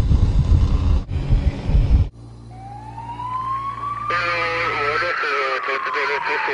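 Low, dense music cuts off about two seconds in, then an emergency-vehicle siren wails once, slowly rising and then falling in pitch. Voices start over it about four seconds in.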